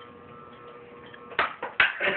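Nerf blaster being fired: two sharp clicks about half a second apart near the end, after a quiet stretch.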